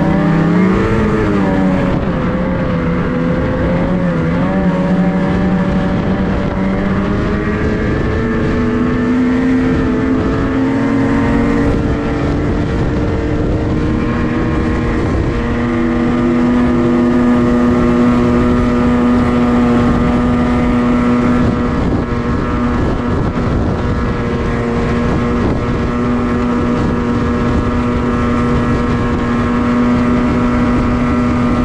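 Snowmobile engine running under throttle while the sled travels. Its pitch wavers and climbs over roughly the first ten seconds, then holds steady at cruising speed, over a constant rush of track and wind noise.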